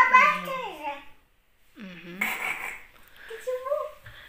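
Speech only: a few short Vietnamese words, with a young child's voice near the end.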